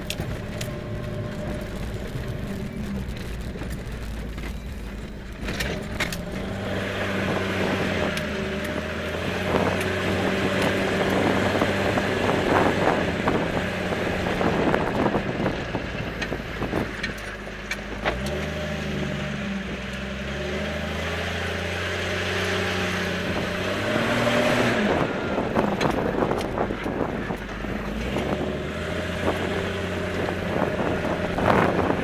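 A four-wheel-drive vehicle's engine running steadily under load on a dirt road, heard from inside the cab. Its pitch drops and climbs a couple of times in the second half as it changes speed. Over it runs a rushing noise of tyres on dirt, with frequent knocks and rattles from the rough ground.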